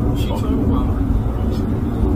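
Faint, low spoken voices over a steady low rumble.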